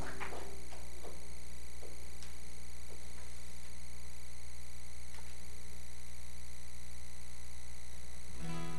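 Steady low electrical hum from a live sound system, with the last guitar chord fading away in the first moment and a few faint clicks.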